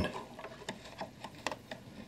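Faint, irregular small metallic clicks of a screwdriver working a mounting screw inside a wooden clock case, a few light ticks about a second apart.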